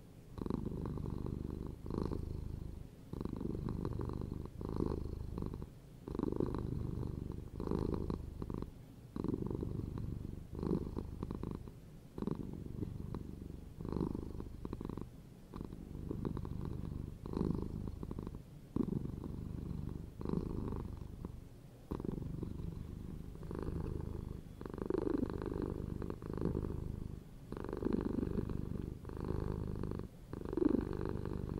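Domestic cat purring close up in a slow, even rhythm: stretches of a second or two with a brief break at each breath, repeating steadily.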